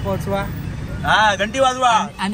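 Men's voices over the low steady rumble of a car on the move, with a loud voice taking over about a second in.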